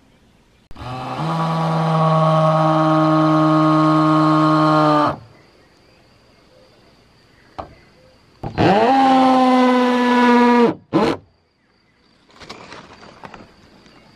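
A cow mooing: one long, steady moo of about four seconds, then a shorter moo about eight seconds in that rises and then slowly falls.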